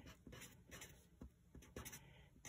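A pen writing digits on paper: a string of faint, short scratching strokes.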